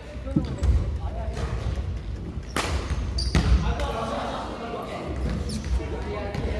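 Badminton in a large sports hall: footfalls thudding on the wooden court floor, two sharp cracks of racket on shuttlecock midway, and short shoe squeaks near the end, with the hall's echo.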